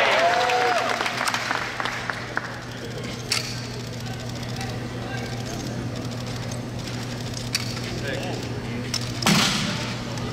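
A short cheer from spectators fades in the first second, then over a steady low hall hum come scattered sharp smacks of a drill rifle being caught in gloved hands during spinning exhibition drill, with one louder knock near the end.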